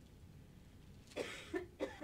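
A woman coughing close to a handheld microphone: a few short coughs starting a little over a second in.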